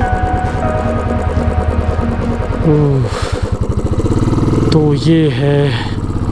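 Royal Enfield motorcycle's single-cylinder engine running steadily on the move. Background music plays over it for the first couple of seconds, then stops.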